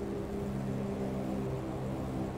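A steady low hum made of several held tones.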